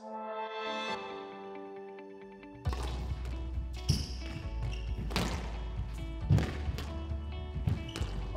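A music sting with held synthesizer tones fades out over the first two and a half seconds. Then squash rally sounds: a squash ball struck by rackets and hitting the court walls, a sharp hit every second or so over a low hum.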